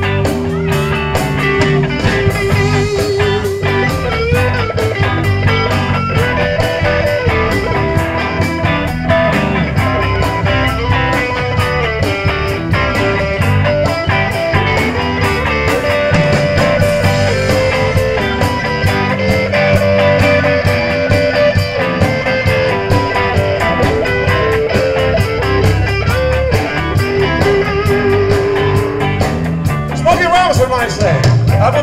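Live blues band playing an instrumental passage with no singing, led by electric guitar with long held, wavering notes over steady bass and drums.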